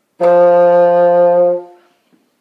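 Bassoon playing one sustained F below middle C, fingered open with the whisper key, held at a steady pitch for about a second and a half.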